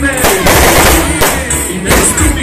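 A rapid string of firecrackers crackling for about a second, with a shorter burst near the end. Music from a sound truck plays underneath.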